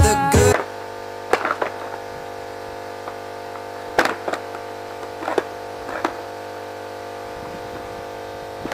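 Skateboard knocking on asphalt during flatground tricks: several sharp clacks of the deck and wheels hitting the pavement, some in pairs, a second or more apart, over a steady electrical hum. A sung music phrase ends in the first half second.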